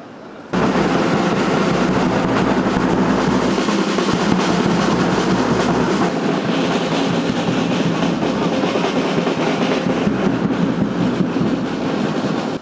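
Boots of a large column of police cadets marching in step on a paved parade ground, many footfalls blending into one dense sound that starts suddenly about half a second in.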